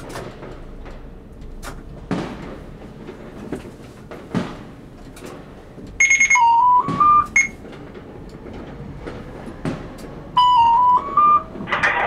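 Electronic signal chime in a tram's driver cab, sounding twice about four seconds apart: a short high beep, then a little rising run of tones. Scattered sharp bangs and pops of fireworks between them.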